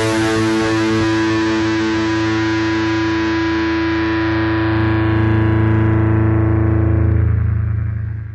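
A distorted electric guitar chord left ringing out, its brightness slowly dying away, with a low hum swelling in the second half before the sound fades out at the end of a black metal track.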